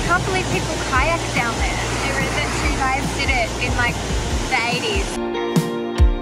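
Huka Falls: the Waikato River rushing through a narrow rock chasm, a steady loud wash of white water with a voice heard over it. Background music comes back in near the end.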